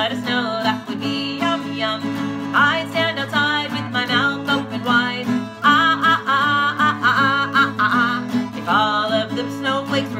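A woman singing a children's song to her own strummed acoustic guitar.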